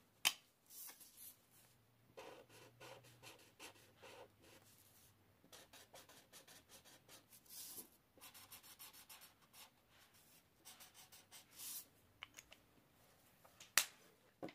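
Faint scratching and rubbing of an Ohuhu alcohol marker's tip across paper in many short strokes. A sharp click just after the start and another near the end fit the marker's cap being pulled off and snapped back on.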